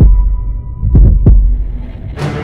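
Soundtrack heartbeat effect: deep double thumps, one beat right at the start and a full pair about a second in, over a low drone.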